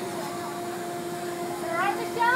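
A steady hum holds one pitch throughout. Near the end, riders on a swinging amusement-park ride let out short, rising squeals.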